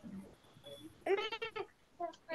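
A short, wavering vocal sound from a person's voice, heard over a video call, lasting about half a second and starting about a second in.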